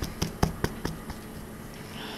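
Light taps and knocks of hands handling a sandwich on a paper towel close to the microphone, about five in the first second, then they die away.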